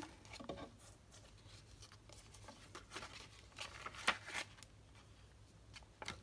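Paper pages of a handmade junk journal being turned by hand: faint, scattered rustles and soft ticks of paper, a few a little sharper in the middle.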